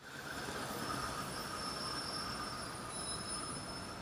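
City street ambience: a steady wash of traffic noise with a few faint, thin high-pitched squealing tones held over it, coming up out of silence at the start.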